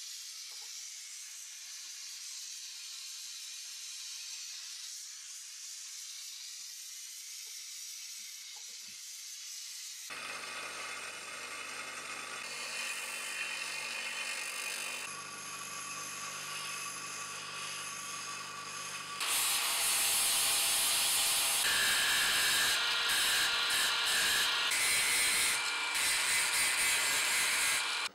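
A steady hiss for about ten seconds. Then a bench grinder runs, grinding a titanium part. From about nineteen seconds in, a louder angle grinder with a flap disc grinds a titanium bearing clamp.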